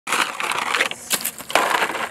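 Water splashed from a plastic bottle onto a young tree's leaves and the dry, sandy ground, a hissing, crackling spatter in two spells with a few sharp clicks between.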